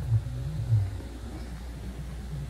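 Low steady rumble, with a wavering low hum over it for the first second or so that then fades.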